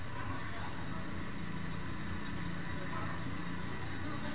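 Ambulance engine running steadily under indistinct voices, heard through a computer's speakers.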